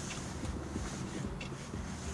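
2014 Kia Rio's 1.6-litre inline-four engine idling, heard from inside the cabin as a steady low hum.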